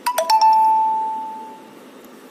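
A short electronic chime like a doorbell: a bright note struck at once, then a slightly lower note that rings on and fades away over about a second and a half.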